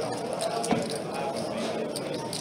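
Clay poker chips clicking as a player fingers his stack, over murmured card-room chatter, with one louder knock about two-thirds of a second in.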